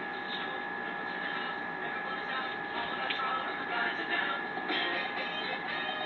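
Music playing through the small speaker of a remote intercom station, sent from the house over the system's wired audio link and being turned up, with a steady high-pitched hum from the audio line underneath.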